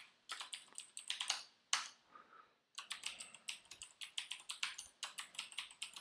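Typing on a computer keyboard: quick runs of keystrokes, with a brief pause about two seconds in before a longer, denser run.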